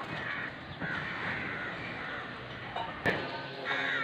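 Several brief animal calls over street background noise, with a single sharp click about three seconds in.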